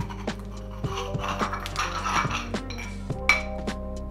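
Peppercorns being crushed in a hand-twisted cast iron grinder: a run of small, irregular metallic clicks and crunches. Background music plays underneath.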